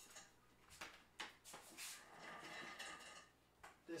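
Near silence with a few faint knocks and a soft rustle in the middle: a person getting up from a desk and moving about.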